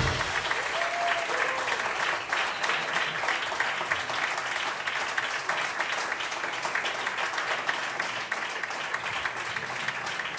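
Club audience applauding at the end of a live jazz piece, the clapping slowly dying away.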